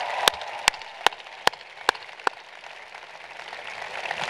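A man's hands clapping close to the microphone, about seven claps at an even pace of roughly two and a half a second, stopping a little over two seconds in. Steady applause from a large audience runs underneath.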